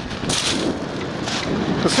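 Wind buffeting the microphone in gusts over the steady wash of breaking ocean surf, with a man starting to speak at the very end.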